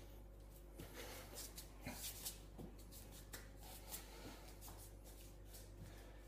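Faint, irregular taps and shuffles of hands and bare feet on a tiled floor during a crawling exercise, over a low steady hum.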